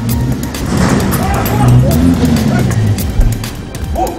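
A film soundtrack music bed under raised men's voices, with the engine of a police pickup truck pulling up, loudest about two seconds in.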